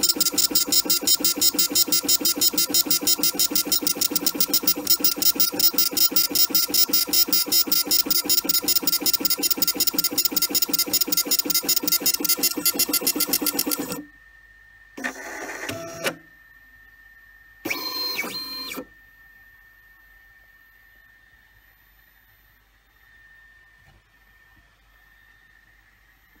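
Laser engraving machine marking a metal bracelet tag: a loud, rapid, even pulsing buzz from the scanning head that stops abruptly about halfway through as the engraving finishes. Two short sounds about a second long follow a second and four seconds later, then only a faint steady whine.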